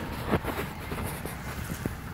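Faint handling sounds, a few small clicks and rustles, over a low wind rumble on the microphone.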